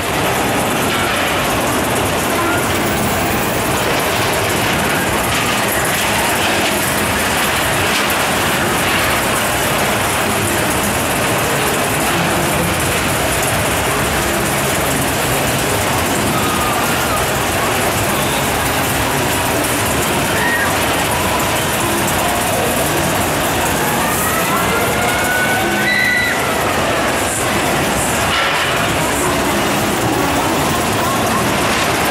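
Spinning wild-mouse coaster cars rolling and rattling over a steel track, over a steady din of fairground crowd noise, with a brief squeal that rises and falls near the end.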